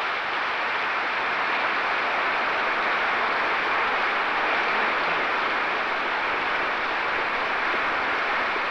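Applause from a large crowd: many hands clapping at once, making a steady, even wash of sound with no gaps.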